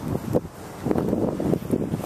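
Wind buffeting the microphone of a handheld camera: irregular gusty rumbling, heavier in the second half.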